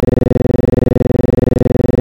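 A steady, buzzy electronic tone pulsing about ten times a second, cut in over the ride as a sound effect. It breaks off abruptly.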